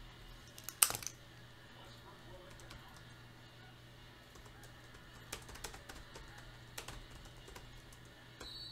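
Computer keyboard being typed on. A quick cluster of keystrokes comes about a second in, then scattered taps and two more short runs of keys in the second half, over a low steady hum.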